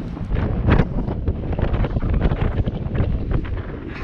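Wind buffeting the microphone: a steady low rumble with many short crackles and knocks through it.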